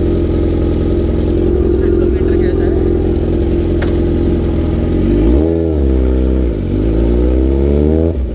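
Kawasaki Ninja 1000's inline-four, breathing through an Austin Racing aftermarket dual exhaust, running steadily at low revs as the bike pulls away. About five seconds in it revs up sharply, dips back, then climbs again near the end.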